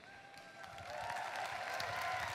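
Large audience applauding, the clapping swelling over the first second and holding steady.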